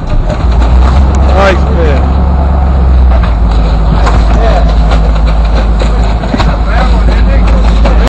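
A boat's engine drones steadily and loudly, with a few indistinct voices over it.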